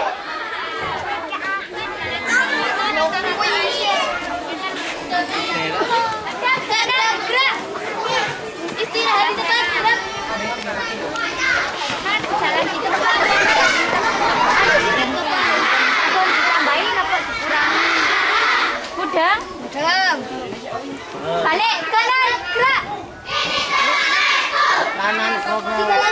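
A crowd of children talking and calling out over one another, a loud, unbroken chatter of young voices.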